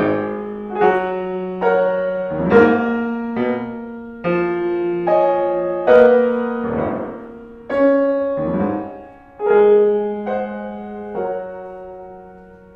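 Grand piano played solo: full chords struck roughly once a second and left to ring and fade, with a few quick runs between them.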